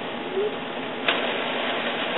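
Epson WorkForce WF-3640 inkjet printer running a printhead cleaning cycle: a steady mechanical noise that steps up with a click about a second in.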